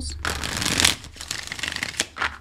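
A tarot deck being shuffled by hand, cards rustling and flicking against each other. The shuffle is densest and loudest in the first second, then thins to a lighter crackle.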